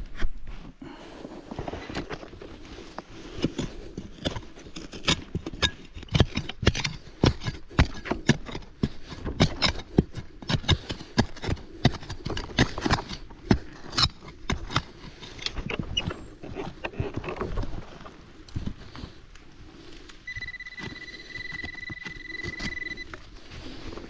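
A serrated hand digging trowel chopping and scraping into root-filled forest soil, a rapid series of sharp knocks and scrapes. Near the end, a steady high electronic tone from the detector sounds for a few seconds, signalling metal in the hole.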